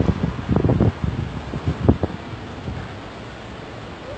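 Microphone buffeting: irregular low bumps and rumbles over the first two seconds, the loudest just before the two-second mark, then a steady hiss of street background.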